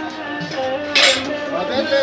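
Metal kitchenware clinking, with one sharp clank about a second in, over faint background music.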